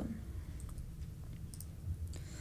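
A few faint clicks over a low, steady room hum, from the presentation slide being advanced.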